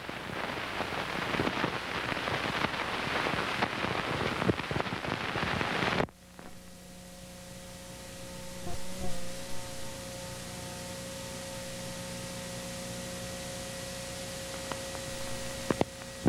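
Hiss and crackle of an old videotape recording with no programme sound: a crackling hiss for about six seconds, then it drops suddenly to a quieter steady hum with a few faint held tones.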